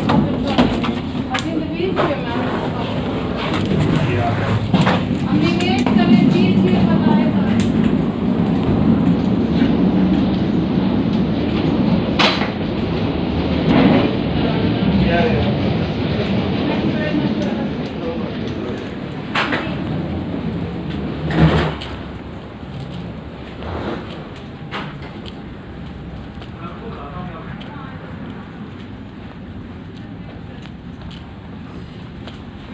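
Indistinct voices of people close by, over a low rumble, broken by a few sharp knocks. It gets quieter in the last third.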